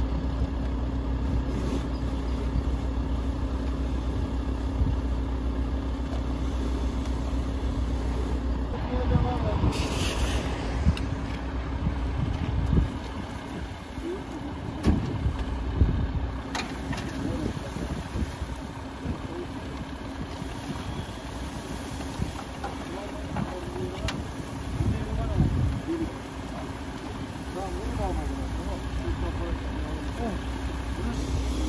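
A fire engine's diesel engine idling with a steady low drone, and a few sharp knocks and clatter between about ten and seventeen seconds in.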